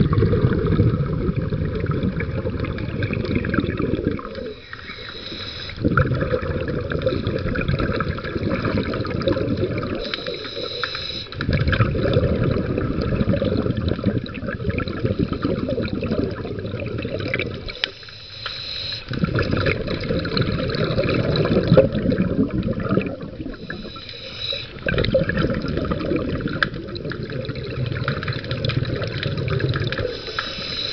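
Muffled rushing and sloshing water, heaviest in the low range, in spells of several seconds broken by brief lulls.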